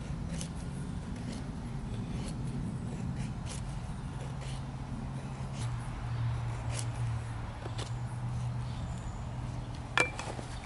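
A thick carbon-steel knife blade (Ka-Bar Becker BK2) shaving thin curls off a stick of split wood to make a feather stick: soft scraping strokes with faint ticks, over a steady low hum.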